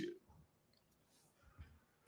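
Near silence: room tone over a call audio feed, with one faint click about a second and a half in.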